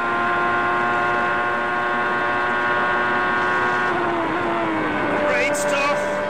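Formula One car engine at high, nearly constant revs, a steady high-pitched whine. About four seconds in the pitch falls as the car slows.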